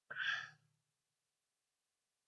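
A man's short sigh or breath into the microphone, lasting about half a second near the start.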